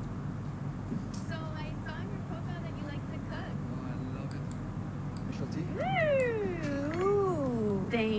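Soundtrack of a video ad playing on a computer: faint voices, then from about six seconds in a long, loud vocal call that glides up and down twice.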